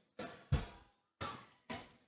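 Four short, faint thumps with silence in between, the second one the loudest.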